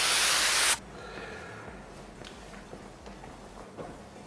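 Compressed-air spray gun spraying hydro-dip activator onto the film floating on the water: a steady hiss that cuts off abruptly under a second in.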